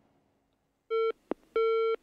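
Telephone busy tone coming over the studio's phone line: two steady beeps starting about a second in, a short one and then a longer one, with a small click between them.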